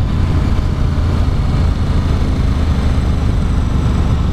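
Motorcycle riding at a steady speed on a wet road: an even rush of wind and tyre noise over a low engine rumble, with no change in pace.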